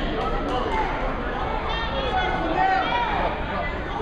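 Spectators' and coaches' voices echoing in a gym hall, with a higher voice calling out twice around the middle.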